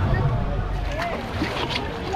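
Water rushing along an open flume water slide as a rider sets off down it, with voices of people nearby.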